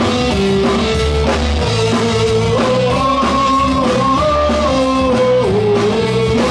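Live rock band playing: electric guitars, bass and drum kit, with a steady drum beat under a held melody line that steps between long notes.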